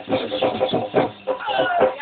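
Music for dhamal dancing: a fast, steady drum beat, loud and thin-sounding with no high end.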